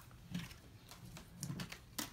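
Pokémon trading cards being handled and laid down: a few light clicks and taps, mostly in the second half, with faint murmuring.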